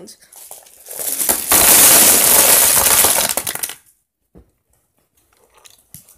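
A large pile of small plastic Thomas & Friends Minis toy engines dumped onto a wooden tabletop: a loud, dense clatter of many pieces landing and rattling against each other. It builds about a second in, lasts nearly three seconds and stops, with one more single clack shortly after.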